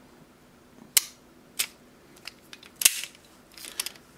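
Sharp clicks and snaps of metal airsoft pistol slide parts worked apart by hand, as the recoil spring and barrel assembly are eased out of an Airsoft Masterpiece 22LR slide. About half a dozen separate clicks, the loudest about a second in and again near three seconds, with a few small ticks close together near the end.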